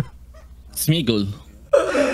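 A man laughing in two bursts, a short one about a second in and a louder one starting near the end.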